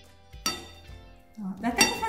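Metal spoons clinking against a ceramic bowl while scooping soft cheese-bread dough: two sharp ringing clinks, one about half a second in and a louder one near the end.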